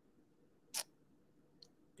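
Near silence, with one short, faint noise about three quarters of a second in.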